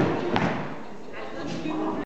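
Country-pop music cuts off, then a single thump sounds about a third of a second later with the echo of a large hall. Faint talking follows in the second half.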